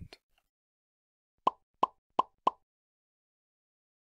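Four short pops in quick succession, about a third of a second apart, from an outro sound effect.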